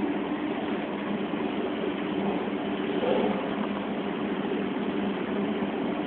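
Steady hum of dairy processing machinery, a constant low drone with an even hiss over it.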